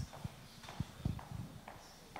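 Faint, muffled footsteps: a few soft low thumps a fraction of a second apart, with a couple of light clicks.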